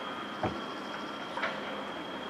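Faint outdoor ambience from the soundtrack of a screen-shared track-meet video, heard through the video call. Two light clicks come through, about half a second in and again about a second and a half in.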